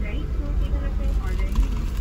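Steady low rumble of a car's running engine heard inside the cabin, with faint voices over it.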